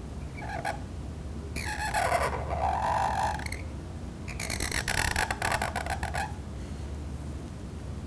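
Reed pen (qalam) scratching across paper in three strokes: a short one near the start, then two longer strokes of about two seconds each.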